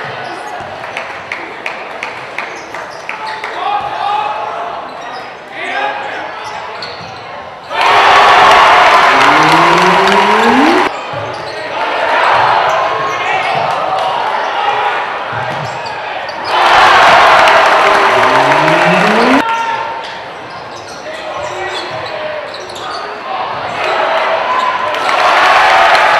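A basketball being dribbled on a hardwood gym floor over the hubbub of a crowd in a large gym. About eight seconds in, and again about seventeen seconds in, the crowd breaks into loud cheering and yelling for around three seconds before dropping back, and it swells again near the end.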